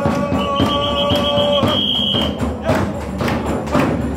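Percussion beating a steady rhythm. A long, high whistle-like tone sounds for about two seconds near the start, over a held lower note that stops before it.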